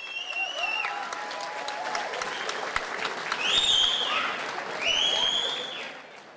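Audience applauding and cheering after a live song, with high whistles over the clapping: one in the first second and two louder, arching ones in the second half. The applause fades near the end.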